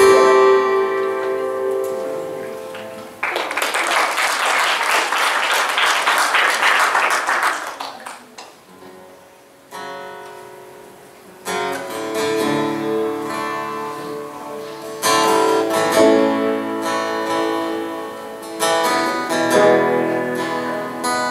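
Electric and acoustic guitars playing chords. A chord rings out and fades, then a few seconds of dense noise cover it. After a short lull the guitars come back in with strummed chords near the middle.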